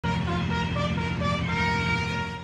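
A military bugle playing a short call: a run of separate notes that ends on a held note, over a steady low hum.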